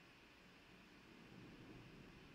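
Near silence: faint rain outside the room, with a faint low rumble of thunder building in the second half.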